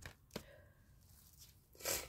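Two faint clicks, then near the end a short, sharp sniff through a stuffy nose from a head cold.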